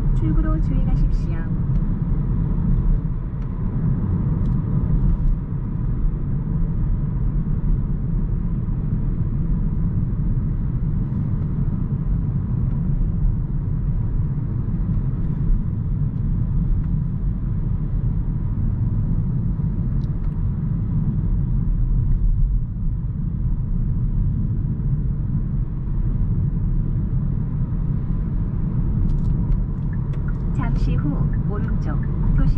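Steady road and tyre rumble heard inside the cabin of a Hyundai Kona Hybrid cruising on an expressway, a low, even drone with little change.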